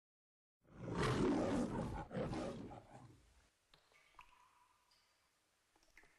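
The MGM logo's lion roar: a lion roars twice, starting just under a second in, with the second roar at about two seconds, dying away by about three and a half seconds.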